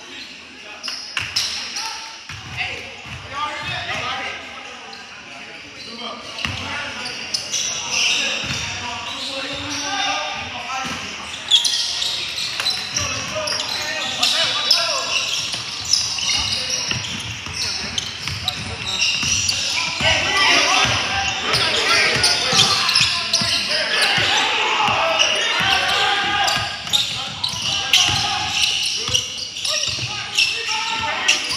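Basketball bouncing on a hardwood gym floor during live play, with scattered voices of players and onlookers, echoing in a large hall.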